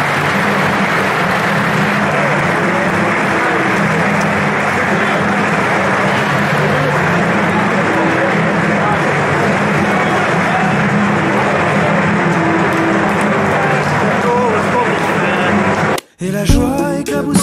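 Football stadium crowd at full time: a steady, loud din of many voices from the stands, cutting off abruptly at the end.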